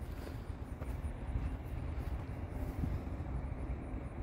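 Steady low outdoor background rumble with no distinct event standing out.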